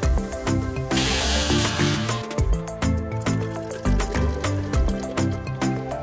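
Background music with a steady beat; about a second in, a hiss of water spraying from a garden hose nozzle cuts in over it for just over a second.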